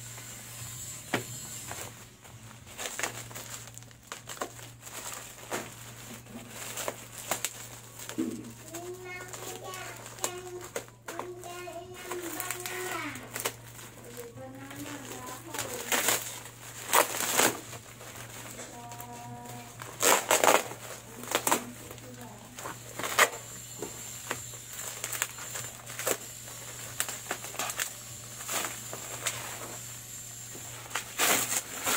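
Bubble wrap crinkling and crackling as it is handled and pulled off a bicycle rim, with a few louder, sharper crackles about two-thirds of the way through. A voice is heard briefly in the background near the middle.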